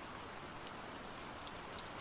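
Faint, steady rain falling, with scattered drops ticking.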